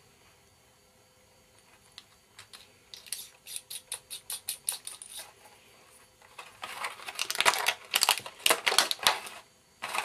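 Handling of a lavalier microphone and its thin cable over a plastic packaging tray: a run of light plastic clicks starting about two seconds in, then louder rustling and clattering for about three seconds near the end.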